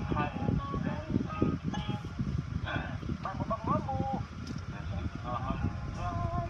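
Indistinct voice sounds without clear words, short calls that rise and fall in pitch, over a steady low rumble heard inside a car cabin.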